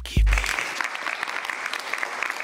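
A small audience clapping, starting about half a second in just as a last deep bass note of dance music dies away.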